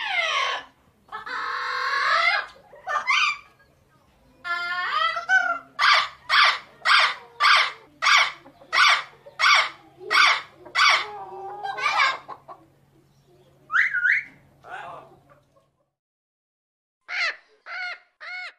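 Chickens calling: a drawn-out call about a second in, then a run of about a dozen evenly spaced clucks, roughly two a second, and three short calls near the end.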